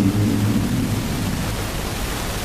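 Steady hiss from the microphone and amplifier, even across all pitches, with a man's voice trailing off just at the start.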